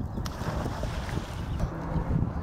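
Splash of a person jumping feet-first off a diving board into a swimming pool: a sudden hit about a quarter second in, then churning, rushing water that fades.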